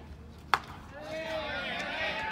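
A single sharp crack of a baseball bat striking a pitched ball, followed by players' shouts.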